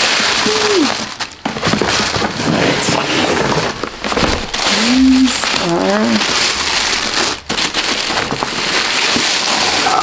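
Thin tissue paper rustling and crinkling as it is pulled and crumpled out of a cardboard shoebox to unwrap a pair of sneakers.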